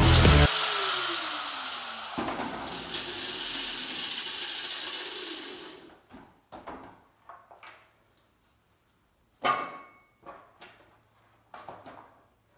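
Angle grinder with a wire-wheel disc switched off and coasting down, its whine falling in pitch and fading away over several seconds. Then a few light knocks and one loud metallic clank about nine and a half seconds in, as the steel part is handled.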